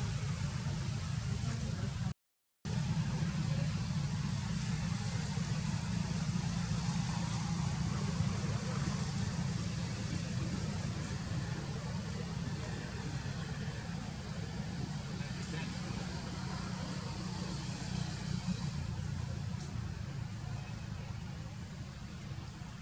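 Steady low rumble with a hiss of background noise above it, cutting out completely for about half a second about two seconds in.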